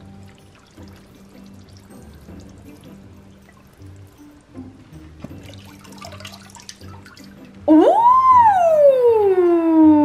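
Water pouring and dripping off a sneaker as it is lifted out of a hydro-dip tub, faint under quiet background music. About three-quarters of the way in, a loud sliding tone with overtones cuts in, swooping up and then gliding slowly down.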